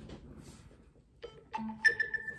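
Low room noise for about a second, then a film trailer's soundtrack starts with bell-like chiming tones; one high tone rings on steadily near the end.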